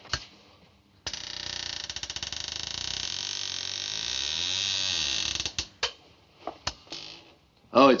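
A door creaking slowly open, one long creak lasting about four seconds, then a few short knocks. A man's voice begins at the very end.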